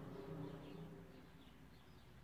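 Near silence: faint background with a few faint, short, high bird chirps.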